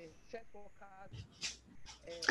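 Faint speech: a voice talking quietly, low in the mix, in broken snatches.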